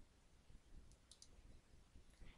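Near silence with two faint computer-mouse clicks about a second in.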